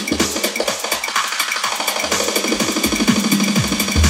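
House/techno DJ mix with driving high percussion. The bass and kick drum are cut out for about two seconds near the start, as on a mixer's low EQ, then the kick comes back in.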